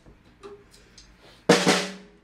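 A single sharp drum hit about one and a half seconds in, ringing briefly before it dies away, after a few faint clicks.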